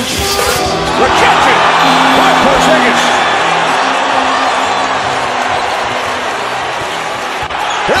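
Basketball arena crowd noise from a game broadcast, steady and slowly easing off, with a few held low music notes in the first half and a basketball bouncing on the hardwood court.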